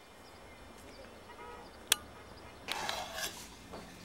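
Low hiss with a single sharp click about two seconds in, then a metal pan and serving spoon clattering and scraping as pasta is worked in the pan.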